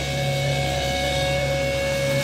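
Heavily amplified electric guitars and bass holding one sustained chord that rings on steadily, with no drum hits.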